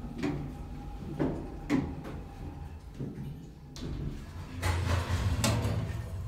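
Short metal knocks and clicks, then a longer clatter as the small stainless-steel phone cabinet door in an elevator car is handled and pulled open, over a low steady hum.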